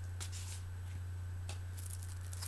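Vinyl record album jackets being handled, with a few brief rustling, sliding scrapes about a quarter second in, around a second and a half in, and near the end, over a steady low hum.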